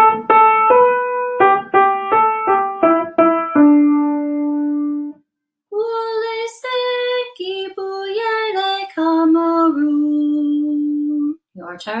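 A piano plays a short melody of about nine notes, ending on a longer held low note. Then a woman sings the Zulu line "wo le se ngi bu ye le Cameroon", also ending on a long held low note.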